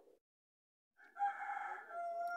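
A rooster crowing: one long crow starting about a second in, after a second of dead silence.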